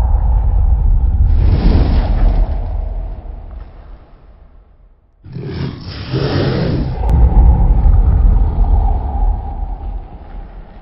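Logo-intro sound effects: a deep rumble with a whoosh about a second in that dies away by about four seconds, then a second whoosh and rumble swelling back in at about five seconds.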